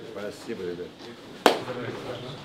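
Quiet chatter of several voices, with one sharp smack, like a single hand clap, about one and a half seconds in.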